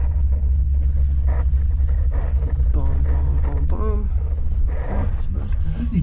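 Steady low rumble inside a moving ski-resort gondola cabin as it rides along its cable, with the riders' voices over it.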